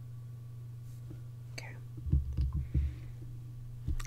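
A steady low electrical hum, a softly breathed 'okay', and a quick cluster of several dull low thumps about halfway through.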